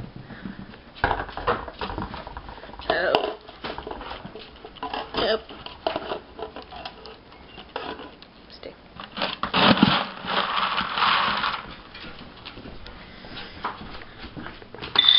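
Pet food and water bowls clattering and knocking as they are handled and nudged, irregular sharp knocks spread through, busiest about two-thirds of the way in.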